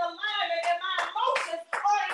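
Several hand claps over a voice using long held, sliding notes, in the call-and-response style of a church worship service.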